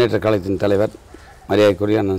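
A man speaking Tamil, with a short pause about a second in.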